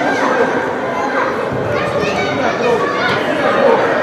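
Overlapping young voices calling and shouting to one another, with no clear words, echoing in a large indoor sports hall: players calling during play in a youth football match.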